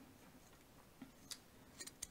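Near silence, with a few faint soft ticks about a second in and near the end, as a plastic fork scores a small ball of play dough.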